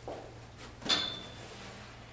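A single sharp metallic clink about a second in, with a brief ring, from the dangling strap buckles of a Kendrick Extrication Device (KED) as it is handled, with faint handling rustle around it.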